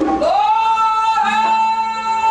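A solo singer's voice sliding up into one long held note in a gospel song, with a low steady accompanying note coming in about halfway through.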